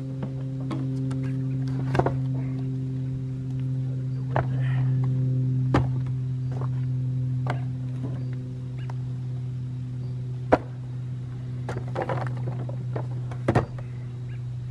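Compact tractor's engine idling with a steady low hum, while chunks of wood are tossed onto a fire pit and knock sharply against the pile several times.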